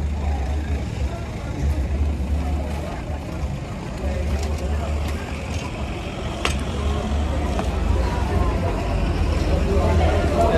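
Busy city street ambience: a low, uneven rumble with passers-by talking in the background, and a single sharp click about six and a half seconds in.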